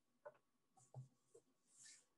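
Near silence, broken by a few faint small clicks and a brief soft hiss near the end.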